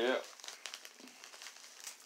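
A USPS mailing envelope crinkling and rustling in a series of small crackles as hands grip and pull at its top to open it.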